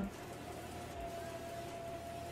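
Quiet room tone with a faint, steady single-pitched tone held throughout.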